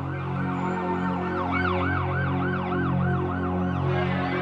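Emergency vehicle siren in a fast yelp, rising and falling about four times a second, over a low steady drone.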